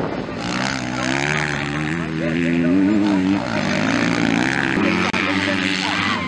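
Several motocross bike engines running hard, their pitch rising and falling as the riders work the throttle through the corners.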